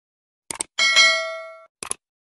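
Subscribe-button sound effect: a quick double click about half a second in, then a bright bell ding that rings with several tones and fades within a second, then another double click near the end.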